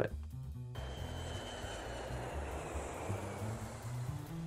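Intro background music with low bass notes, joined about a second in by a long rushing noise effect with a faint, slowly falling high tone under the logo animation.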